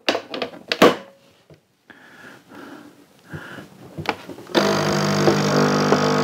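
A few clicks as the Nescafé Dolce Gusto capsule machine is handled, then about four and a half seconds in its pump starts with a loud, steady buzz, brewing a hot chocolate pod.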